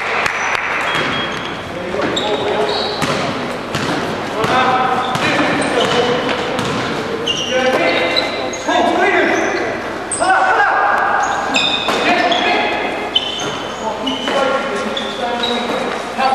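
Live basketball play in an echoing sports hall: the ball bouncing on the court floor, trainers squeaking as players cut and stop, and indistinct calls from players. The sound is busy and continuous, with many short high squeaks.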